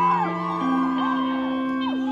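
Live band music: held chords with high tones sliding up and down over them, then a new chord entering near the end.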